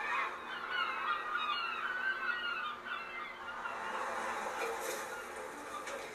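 A flock of birds calling over one another, a busy chorus of short squawks and cries.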